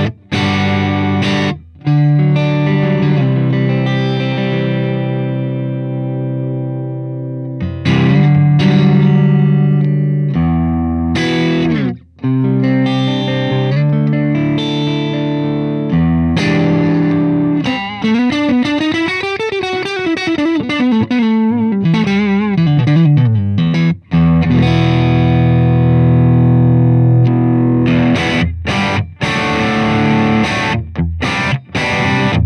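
Electric guitar (Fender Telecaster) played through an MXR Mini Booster pedal into the clean channel of a Hughes & Kettner Tubemeister Deluxe 20 tube amp. Chords ring out in phrases separated by brief breaks, and about two-thirds of the way in a quick run of notes climbs and falls back.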